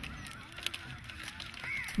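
Faint bird calls, a few thin wavering notes with one rising and falling call near the end, over a quiet low background.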